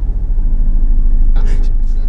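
A loud, deep, steady rumble that swells over the first second and then eases slightly.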